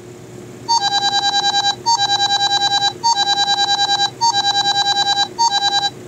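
Electronic alarm tone of the Wake Voice alarm clock app playing through a Samsung Android phone's speaker: five bursts of rapid high beeping, about a second each, every burst opening with a short higher note. It starts about a second in, and the last burst is cut short near the end.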